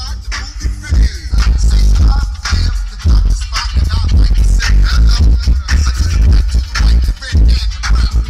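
Loud hip hop music with heavy, pounding bass, played through a car's aftermarket stereo system.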